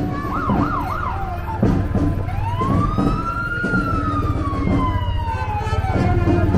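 Emergency-vehicle siren: a few quick up-and-down yelps in the first second, then from about two seconds in one long wail that rises and slowly falls, over a steady low hum.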